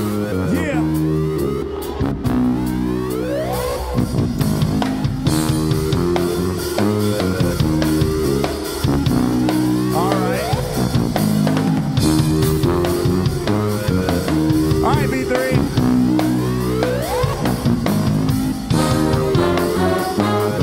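A live band playing an upbeat groove: a drum kit keeping a steady beat under electric keyboard and bass chords that repeat in a pattern.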